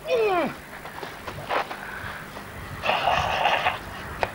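A man's voice giving a short exclamation that falls in pitch, then, about three seconds in, a breathy hiss lasting nearly a second, as from a forceful exhale.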